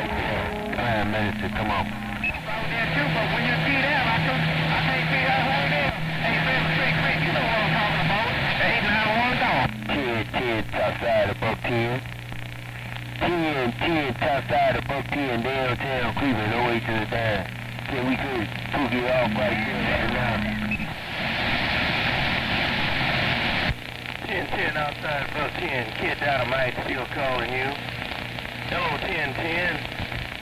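CB radio receiver on 27.025 MHz picking up distant skip stations on single sideband: several garbled, warbling voices talking over one another through static, with steady heterodyne tones underneath.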